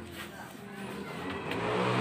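A motor vehicle engine running and growing steadily louder, with a slight rise in pitch.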